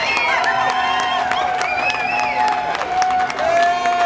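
Audience cheering, whooping and clapping, many voices calling out over the applause at the end of a song.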